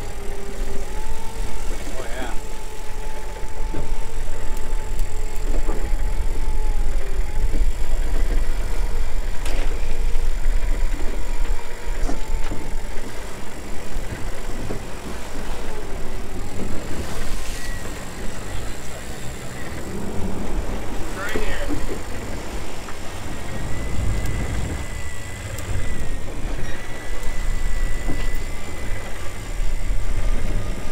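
Outboard engines running under way, with wind and rushing water over a steady low rumble. A thin whine holds and wavers in pitch through the first half, and a higher one comes in near the end.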